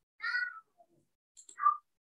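Two short high-pitched cries: the first, about half a second long, comes just after the start; the second is shorter and louder, about a second and a half in.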